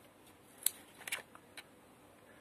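Scissors snipping through petunia stems: a few sharp snips in the space of a second, the loudest about two-thirds of a second in, as the leggy shoots of a hanging-basket petunia are cut back to make it bush out.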